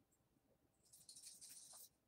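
Near silence, with a faint high hiss lasting about a second around the middle.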